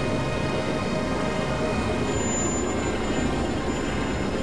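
Experimental synthesizer drone and noise music: a dense, steady rumbling noise texture with faint sustained tones, joined about halfway through by a thin high whistling tone.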